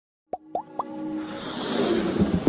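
Logo-intro sound effects: three quick pops about a quarter second apart, each flicking upward in pitch and each a little higher than the last, then a rising whoosh that swells in loudness.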